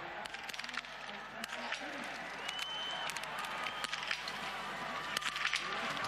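Biathlon shooting-range ambience: steady crowd noise with a scatter of sharp cracks from small-bore biathlon rifles fired by several athletes at the standing shooting stage, and faint distant voices.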